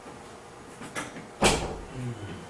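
A single sharp knock or bang about one and a half seconds in, with a softer click half a second before it.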